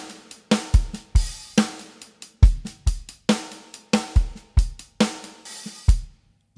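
Native Instruments Studio Drummer sampled acoustic drum kit playing back a slow MIDI groove at 70 bpm: a steady hi-hat pattern with kick drum and snare hits, stopping abruptly at the end.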